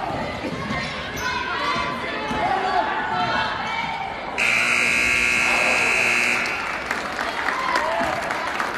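Gym scoreboard buzzer sounding one steady, loud tone for about two seconds, starting a little past halfway. Before it come sneaker squeaks on the hardwood floor and crowd noise.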